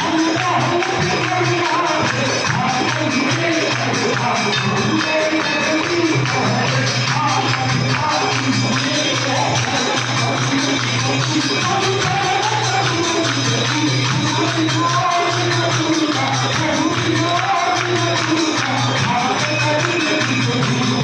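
Hindu devotional song sung in worship, with a wavering melody over a steady low drone and a quick, even jingling beat of hand percussion.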